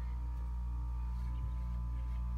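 Steady low hum with a faint, steady high whine: the room tone of a running computer.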